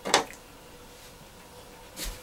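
A short splash of water poured from a plastic watering can onto the damp soil of a seedling cup, then quiet, with a soft knock at the very end.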